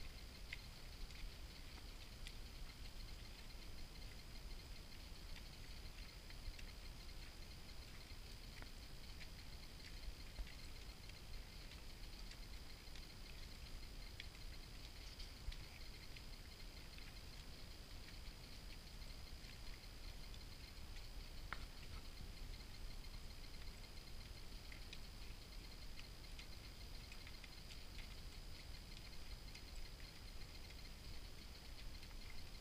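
Mule walking on a dirt trail: faint, soft, irregular pats and ticks of hooves and tack over a low steady rumble.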